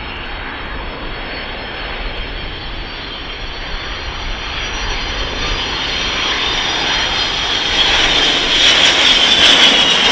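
Boeing KC-135 Stratotanker's four turbofan engines on approach with gear down, getting steadily louder as it comes closer. A high whine grows strong near the end and begins to drop in pitch as the jet passes.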